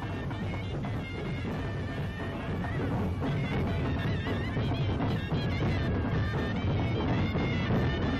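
Traditional Indian folk band playing: barrel drums (dhol) beating, with a wind instrument carrying a wavering melody above them. The music grows slightly louder.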